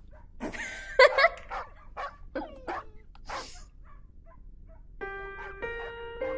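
A puppy gives short yips and falling whines between breathy huffs. Soft music with held notes comes in about five seconds in.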